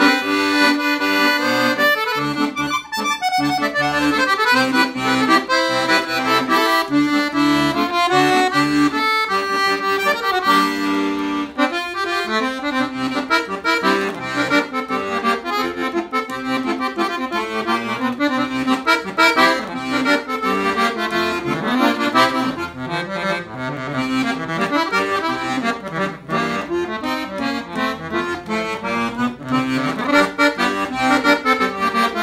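Pollina piano accordion played solo: a melody on the treble keys over a pulsing bass-and-chord accompaniment from the left-hand buttons, with a brief break about twelve seconds in.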